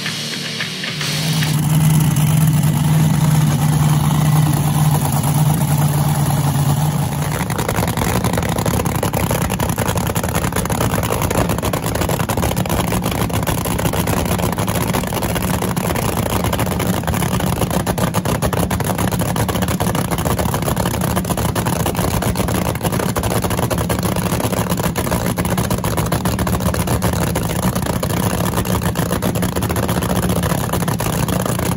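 Supercharged engine of a front-engine dragster running loud and steady at idle. About seven seconds in its note changes to a rougher, slightly quieter idle. Rock music is heard for the first second.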